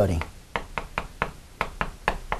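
Writing on a lecture board: a run of about half a dozen sharp taps, a few per second at uneven spacing, as the writing tool strikes the board.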